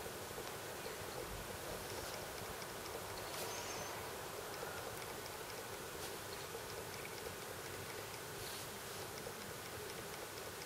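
Steady, faint background hiss, with scattered faint high ticks.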